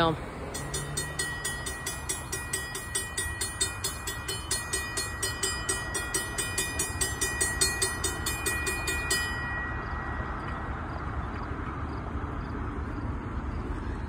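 Railroad grade-crossing warning bell ringing at about two strokes a second, stopping about nine and a half seconds in. Under it runs a steady low rumble from the approaching freight train and the open air.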